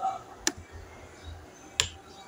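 Two sharp clicks, about 1.3 s apart, from the computer's pointing device as pen-tool anchor points are placed in Photoshop.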